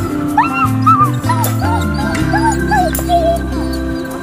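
Harnessed sled dogs whining and yipping: a string of short rising-and-falling cries from about half a second in until near the end, over steady background music.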